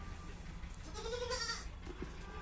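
A goat bleats once, about a second in, with a short call lasting under a second.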